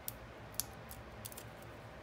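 A few faint small clicks and ticks as the paper backings are peeled off foam adhesive dimensionals on the back of a card label.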